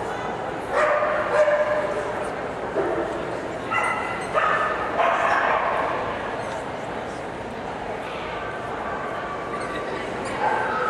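Nova Scotia duck tolling retriever giving several drawn-out, high-pitched whines and yips, the loudest about a second in; the excited vocalising typical of tollers.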